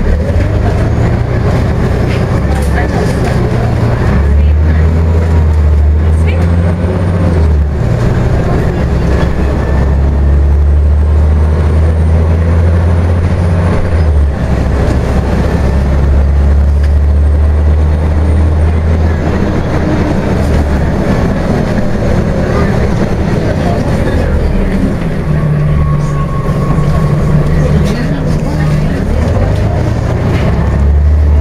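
Scania OmniCity single-deck bus heard from inside the passenger cabin while under way: a deep, continuous engine drone that shifts in pitch and strength several times as the bus drives along.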